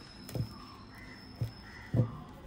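A deck of tarot cards being shuffled in the hands, with three short soft knocks of the cards, the last the loudest near the end. Faint bird calls repeat a few times in the background.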